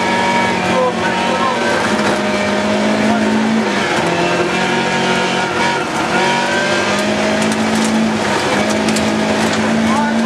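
Rally car engine heard from inside the cabin, driven hard: the revs climb and drop sharply at each upshift, about four and eight and a half seconds in, over steady gravel road noise.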